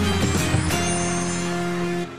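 TV show ident music: a rhythmic beat that gives way, under a second in, to a held chord without drums.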